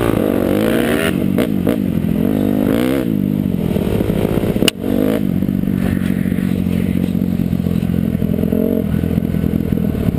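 Dirt bike engine heard close up from a camera mounted on the bike, its pitch rising and falling with the throttle for the first few seconds, then running at a steady speed. A single sharp knock is heard about halfway through.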